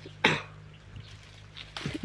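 A man coughs once, briefly, about a quarter second in, over a faint steady low hum.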